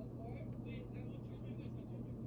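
Faint street ambience: a steady low hum and rumble with indistinct voices in the background.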